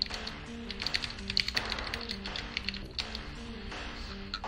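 Typing on a computer keyboard: a quick run of keystrokes over background music with a repeating low melody.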